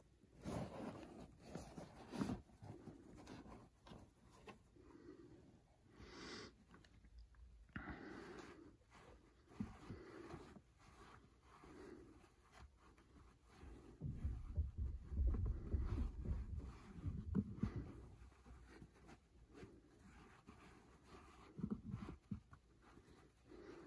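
Hands moving and brushing fabric baseball caps on a shelf: soft, scattered rustles and scrapes, with a few seconds of louder, low bumping noise a little past the middle.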